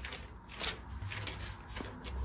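Soft rustling of thin Bible pages being turned, a few brief papery swishes.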